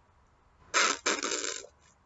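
A man imitating a baby-like noise with his mouth: two short, breathy, hissing vocal sounds starting about three-quarters of a second in, without words.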